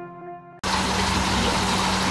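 The tail of a music track fades, then cuts off abruptly about half a second in to a steady hum and water rush of a fish room full of running aquarium pumps and filters.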